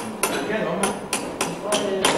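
A run of about six sharp metallic strikes in two seconds, unevenly spaced, each with a brief ring, like hammer blows on metal.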